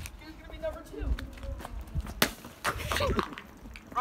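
A soda can being smashed: one sharp, loud smack about two seconds in.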